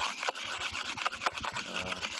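A stylus scrubbing rapidly back and forth on a pen tablet's surface as it erases the on-screen writing: a dry, continuous scratchy rubbing made of many quick strokes.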